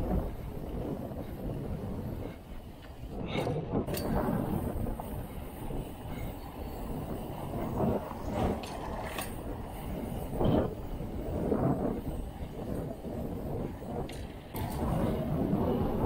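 Mountain bike rolling fast over brick paving: wind on the microphone and tyre rumble, with a few short louder noises along the way.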